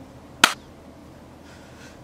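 A single sharp finger snap about half a second in.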